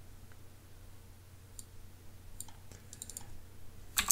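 Faint clicks of a computer mouse and keyboard: a single click about a second and a half in, then a quick cluster of several clicks near the end, over a low steady hum.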